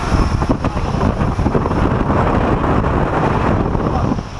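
Skydiving aircraft's engine and propeller running on the ground, a loud steady noise with gusts of prop wash buffeting the microphone.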